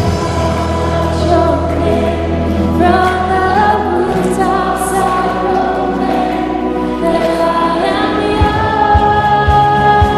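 A live worship band plays a slow song of praise: sustained bass and keyboard chords under held lead and group vocals. Drum beats come in near the end.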